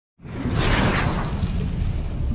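Intro-logo sound effect: a whoosh that falls in pitch about half a second in, over a sustained deep rumble.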